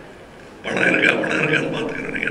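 A man's voice through a handheld microphone and hall PA, starting about two-thirds of a second in after a brief pause.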